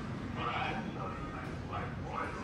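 Indistinct voices in short, high-pitched snatches over a steady low rumble.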